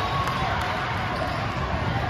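Basketball game sounds on a hardwood court: a ball bouncing and a few short shoe squeaks over a steady wash of voices in a big, echoing hall.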